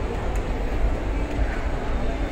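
Steady indoor shopping-mall background noise: an even low rumble with no distinct events.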